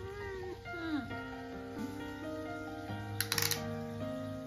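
A Munchkin cat meows twice, each call falling in pitch, as background music with held, stepping notes comes in; a quick rattle of clicks sounds about three seconds in.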